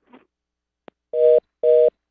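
A telephone line clicks once and then gives a fast busy tone, a two-note beep repeating about twice a second, heard twice. This is the sound of a call that has been disconnected.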